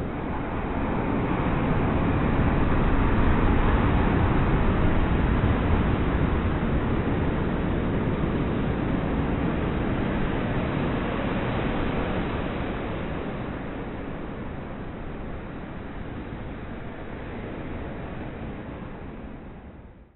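A rushing, surf-like wash of noise with no clear pitch or beat. It swells up over the first few seconds, holds, then slowly fades away toward the end.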